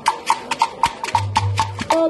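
Live traditional percussion music: a fast, even knocking beat of about five or six strokes a second on a ringing wooden or bell-like instrument, with a low, deeper tone sounding briefly past the middle.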